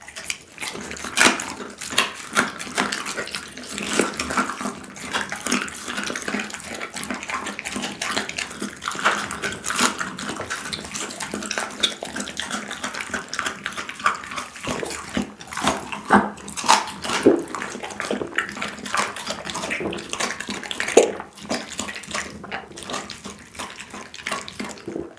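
A pit bull chewing a raw bone-in chicken thigh: steady wet chewing and crunching of meat and bone, with a few sharper, louder cracks, the biggest about a second in, in the middle and about three seconds before the end.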